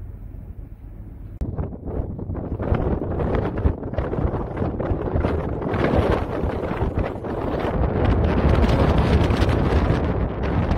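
Strong winter wind gusting and buffeting the microphone. It jumps much louder about a second and a half in, then keeps gusting and fluttering.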